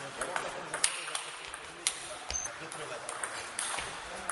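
Table tennis rally: a celluloid ball clicking sharply off rubber bats and the table top in an uneven run of hits, two of them louder than the rest.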